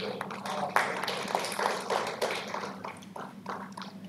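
A small audience clapping: dense hand claps that thin out over the last second or so.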